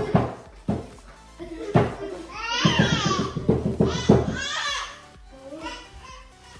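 Excited shouting voices, children among them, over background music; the voices are loudest in the middle and die down near the end.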